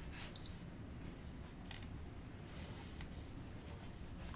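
A single short, high-pitched electronic beep about half a second in, over quiet room tone.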